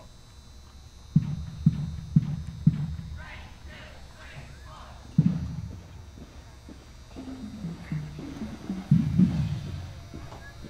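Muffled, distant sound across a football stadium: four evenly spaced low thumps about half a second apart starting a second in, another a few seconds later, and a voice over the stadium loudspeaker near the end.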